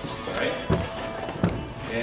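Two sharp knocks about three quarters of a second apart, over a quiet room with a man's low voice.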